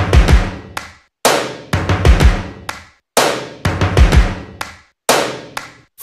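Music: a drum intro of short phrases of heavy bass-drum and cymbal hits, each phrase dying away into a brief silence, about every two seconds.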